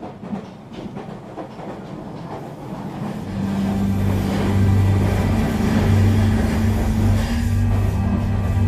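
Train running on rails, its wheels clicking over the rail joints. A steady low hum swells in and grows louder from about three seconds in.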